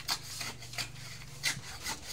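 Steel trowel scraping wet cement mortar in a bucket: several short scrapes, about two a second.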